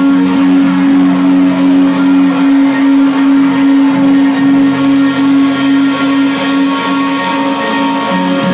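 Electric guitars and bass of a rock band holding one chord and letting it ring, the guitarist's strumming hand lifted off the strings; the level wavers a few times a second, and the lowest note shifts down about two and a half seconds in.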